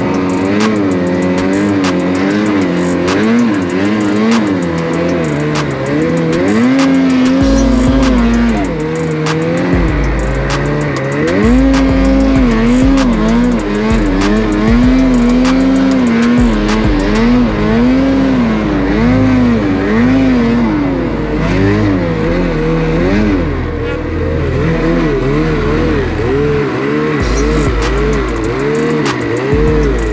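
Two-stroke engine of a Lynx Boondocker snowmobile running hard in deep powder, its pitch rising and falling continually as the throttle is worked. Background music with a bass line and beat plays under it.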